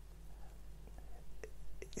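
A pause in a man's soft, whispery monologue: a faint trace of voice or breath, then a couple of small clicks near the end over a low steady hum.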